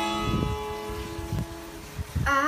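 Steel-string acoustic guitar: a plucked chord left ringing and slowly dying away, with two soft low notes under it, one about half a second in and one about a second and a half in.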